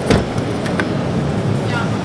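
The side-door latch of a Volkswagen Transporter T5 clicks sharply as its handle is pulled, just after the start, and the sliding door is released to open. A few lighter clicks follow near the end.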